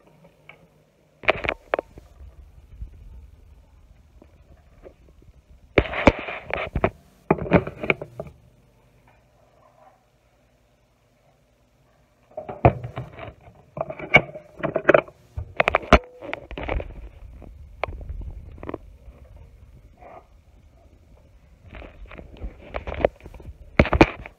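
Knocks, clunks and scrapes of a metal cooking pot being handled and set on a stovetop, in several short clusters with a near-silent gap in the middle, over a faint low rumble.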